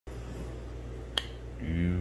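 A single sharp click a little over a second in, over a low steady hum; a man's voice starts near the end.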